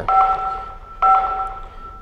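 A bell-like chime struck twice, about a second apart, each strike a two-pitched ringing tone that fades away.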